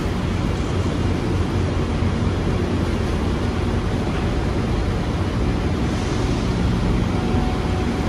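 Steady mechanical hum of Amtrak Amfleet I passenger coaches standing at a covered platform, from their air-conditioning and electrical equipment running, with a low, even drone and hiss.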